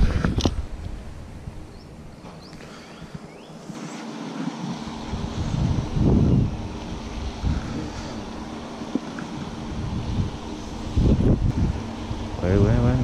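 Wind rumbling on the camera microphone in gusts, swelling about six seconds in and again near the end.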